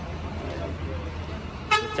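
A vehicle horn gives one short toot near the end, over a steady low rumble of vehicles.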